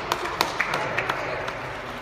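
Scattered hand claps from a small crowd, about seven irregular claps over two seconds, over low crowd voices.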